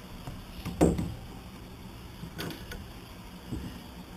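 A few knocks and clatters as bar clamps and a plywood block are handled, the loudest about a second in and a smaller one about two and a half seconds in, over a steady low hum.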